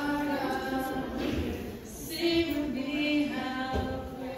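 A group of voices singing together in long, held notes, with a short break for breath about two seconds in before a louder phrase.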